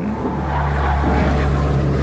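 A steady, low mechanical-sounding drone with a constant hum underneath. It comes in suddenly as the narration stops and holds evenly throughout.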